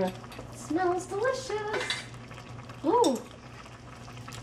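A woman laughing in a few short, high-pitched notes that step upward, then one more rising-and-falling note, with light clinks of a glass jar and kitchen utensils. A steady low hum runs underneath.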